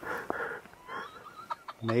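A faint voice, tinny and thin, from a person on a video call coming through a phone's speaker. Near the end a man starts speaking close by.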